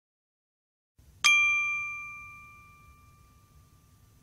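A single bright bell-like ding, struck once about a second in and ringing down over about two seconds. It is an edited-in chime marking the reveal of a countdown number.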